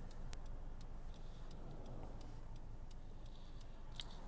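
Car turn-signal indicator ticking steadily in even tick-tock pairs, a little under twice a second, over faint road rumble inside the moving car's cabin.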